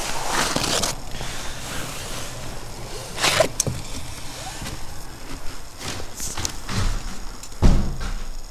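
Footsteps crunching through packed snow and onto snow-covered wooden steps, with a heavier thud near the end as a foot lands on the wooden floor.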